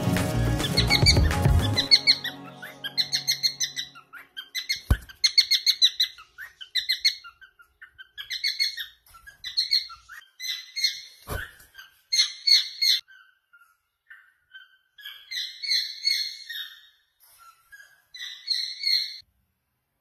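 Cockatiel chirping in many short repeated calls, grouped in bursts with brief pauses between. Two sharp knocks come about five and eleven seconds in. Music fades out over the first couple of seconds.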